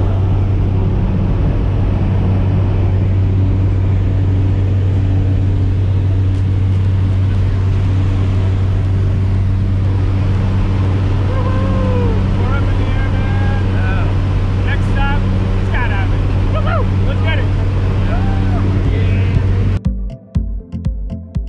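Steady, loud low drone of a skydiving jump plane's engine heard inside the cabin. People's voices rise faintly over it from about halfway through.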